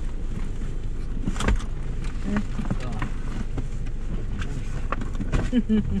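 Car engine idling steadily, heard from inside the stopped car, with a few sharp clicks or knocks about one and a half seconds in and again near the end.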